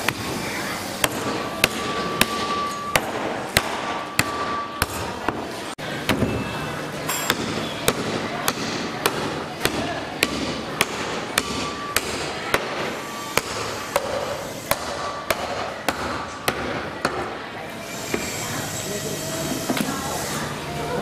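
Heavy meat cleaver chopping through mutton ribs on a round wooden chopping block: sharp, irregular chops, about one or two a second.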